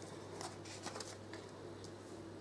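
Tarot cards handled and laid on a table: a few faint soft clicks and rustles, over a low steady hum.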